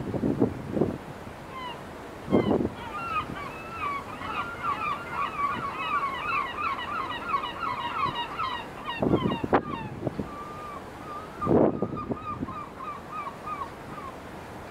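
A flock of birds calling in a dense chatter of short, quick calls for several seconds, thinning out toward the end. Wind buffets the microphone in a few low gusts.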